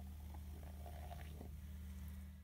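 Steady low hum of room tone, a constant drone with no speech, and a few faint soft sounds over it.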